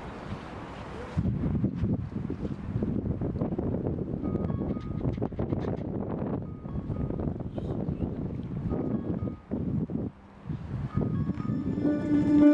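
Wind buffeting an open camera microphone: a rough, uneven rumble that rises and falls, with a short lull about ten seconds in. Piano music starts right at the end.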